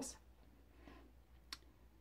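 Near silence: room tone, with one short sharp click about one and a half seconds in.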